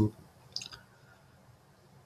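A single short, faint click about half a second in, then near silence.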